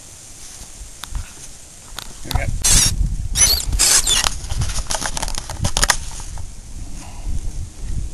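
Handling noise from a camera being moved about: a quiet stretch, then from about two seconds in a run of sharp clicks and rustles over a low rumble that eases off near the end.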